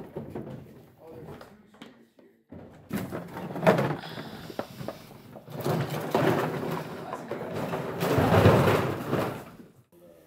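Bags of duck decoys being handled and loaded, rustling and clattering in irregular bursts, with a sharp knock about four seconds in and a long, loud stretch of clattering near the end.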